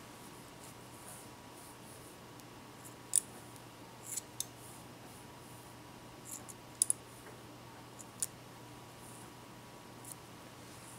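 Hair-cutting scissors snipping over a comb at the nape, blending the clippered hair so no line shows: scattered single snips, the sharpest about three seconds in and a quick pair near seven seconds in.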